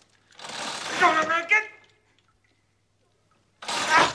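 A man's wordless vocal sounds: a drawn-out strained cry lasting about a second and a half, then a silence, then a loud yell that starts near the end.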